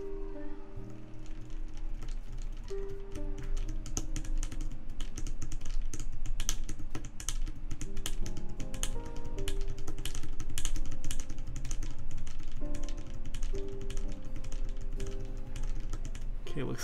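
Steady typing on a TGR Alice split keyboard with Gateron Ink Black linear switches in a brass plate, keys struck with no keycaps fitted, giving a dense run of quick clacks. Background music plays underneath.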